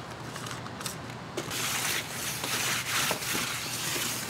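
A hand brushing and pressing pumice-rich potting mix across a plastic plug tray, packing it into the cells: a dry, gritty rustle, strongest from about a second and a half in, with a few light taps.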